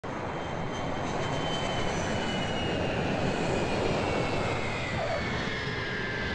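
Twin-engine jet airliner flying low overhead on its landing approach: a steady loud engine rush with a high whine that slowly falls in pitch.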